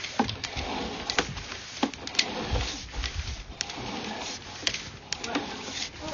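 Sewer inspection camera push cable being pulled back out of the line and fed onto its reel: irregular sharp clicks over a steady rustle, with a brief low rumble in the middle.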